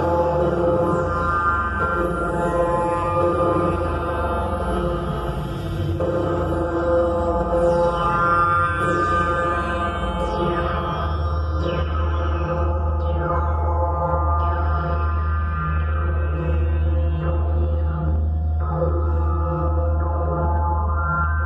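Live experimental electronic drone music: a dense, sustained cluster of steady tones over a deep bass hum, with a few falling glides up high. From about halfway a regular low pulse comes in, beating roughly one and a half times a second.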